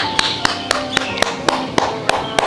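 A man clapping his hands steadily, about four claps a second, over background music.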